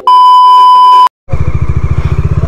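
A loud, steady test-tone beep, the kind played with TV colour bars, lasting about a second and cutting off abruptly. After a brief silence a motorcycle engine comes in, running with an even pulse.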